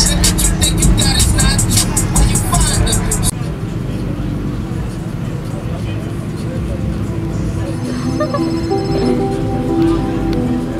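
Bass-heavy music with a fast hi-hat beat plays loudly through a car audio system and cuts off abruptly about three seconds in. After that a quieter, steady low rumble continues, with a few held tones near the end.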